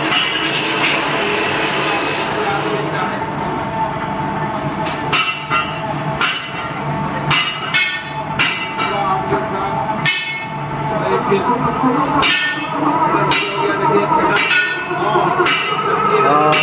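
Repeated short metallic clinks and knocks from a hand working the steel tray and mould rails of a batasa machine, over a steady hum and background voices.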